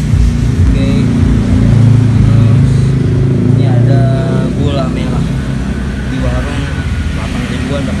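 A low, steady engine rumble, loudest a couple of seconds in and easing after, with faint voices in the background.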